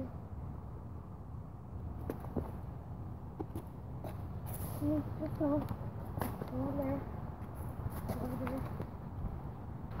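Faint outdoor ambience with a steady low rumble and scattered soft clicks, and a child's quiet voice a few times in the second half.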